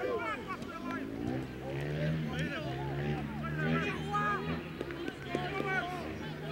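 Several voices calling and shouting over one another, from players and people on the sideline during a rugby league game. A steady low hum sits underneath from about a second in.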